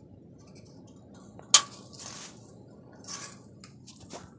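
Handling noise as the phone is moved around: one sharp knock about a second and a half in, followed by two brief rustles.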